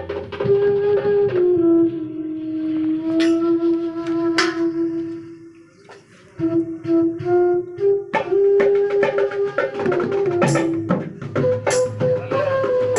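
Side-blown bamboo flute playing a folk melody in long held notes over a hand-beaten double-headed barrel drum. Both stop briefly near the middle, then the flute returns and the drumming gets busier.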